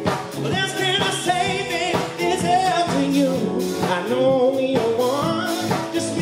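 Live soul band playing: a male lead singer holding wavering, sliding sung notes over saxophones, drums, electric bass and keyboard.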